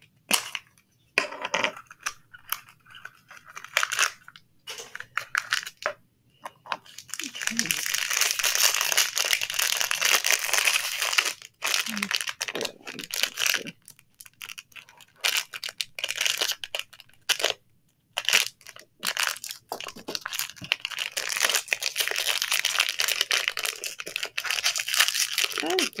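Crinkly blind-pack toy wrapper being handled, torn open and crumpled by hand. Scattered clicks and rustles come first, then two long spells of steady crinkling: one about a third of the way in and another in the last quarter.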